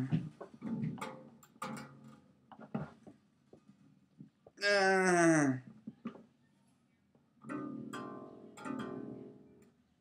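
Freshly restrung acoustic guitar, not yet tuned, being plucked and then strummed twice near the end, the strings ringing and fading. A throat-clear comes at the start and a loud falling tone about halfway through.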